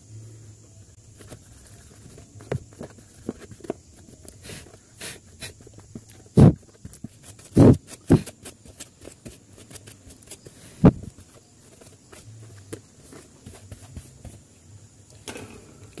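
Brush scrubbing dust off a plastic stand-fan blade assembly and its hub, in quick scratchy strokes. Three louder knocks of the plastic blades being handled come between about six and eleven seconds in.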